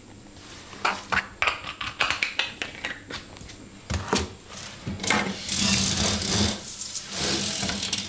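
Close-up hand sounds of skin cream being handled and rubbed on a head, with quick clicks and crackles, then two bursts of hiss from water spraying into a salon wash basin near the end.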